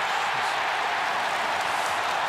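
Large stadium crowd cheering and applauding steadily after a goal.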